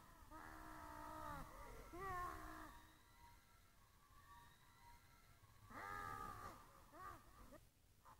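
Faint pitched vocal calls, about four of them, each bending in pitch, the first and longest lasting about a second.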